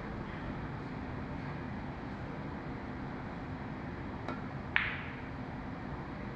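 Pool shot: a faint tap of the cue tip on the cue ball, then about half a second later a single sharp clack as the cue ball strikes an object ball, with a short ring. A low, steady room hum runs under it.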